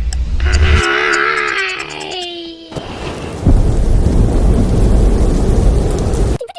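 Cartoon storm sound effect: a wavering tone that droops at its end, then a sudden loud rumble of thunder with rain-like noise from about halfway through.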